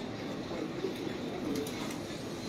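Pigeons cooing: soft, low, wavering calls repeating over a steady background hiss.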